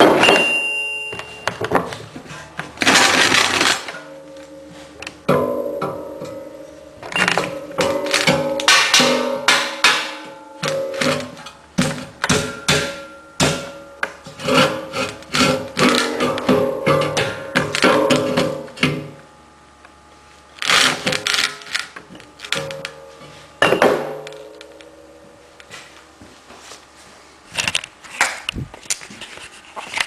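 Music with held notes, over loud, irregular metal clanks and knocks from a steel backhoe bucket being worked onto its pins and bushings.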